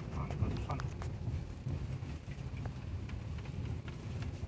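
Inside a Honda car driving over an unpaved, rough road: a steady low rumble from the tyres and suspension, broken by irregular small knocks and rattles as the car rides over the bumps.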